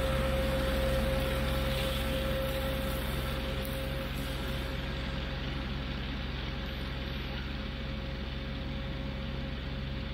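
Kioti CK4010hst compact diesel tractor running under load with a Titan 1912 flexwing rotary cutter mowing tall grass: a steady low engine drone with a steady high whine, fading slowly as the rig moves away. The whine drops off about four seconds in.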